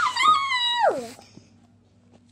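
A single high-pitched whining cry lasting about a second, held fairly steady and then sliding sharply down in pitch at the end.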